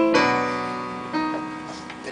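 Piano playing slow chords between sung verses, each chord struck and left to ring and fade, with a fresh chord about a second in.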